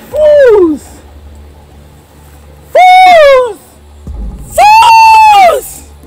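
Three loud, high-pitched screams, each longer than the last. The first drops steeply in pitch, and the next two rise and then fall, over low background music.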